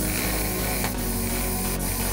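Power drill driving a self-drilling screw into a rusty steel tube, its drill point cutting into the metal with a steady, bright, hissing whir.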